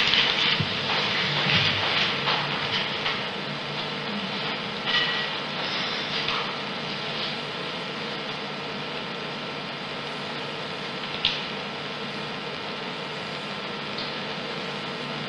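Steady room noise in a courtroom: a constant hiss with a faint hum, some faint irregular sounds in the first few seconds, and a single sharp click about eleven seconds in.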